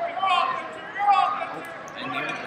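Voices shouting in a large, echoing gym hall, two calls about a second apart, over wrestlers working on the mat.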